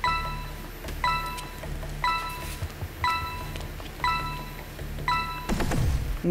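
Quiz-show countdown timer chiming once a second, six short bell-like tones in a row, over a low steady music bed.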